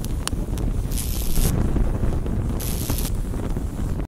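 Large fire burning: a steady low roar with a few sharp crackles near the start and two short bursts of hiss, about a second in and near three seconds.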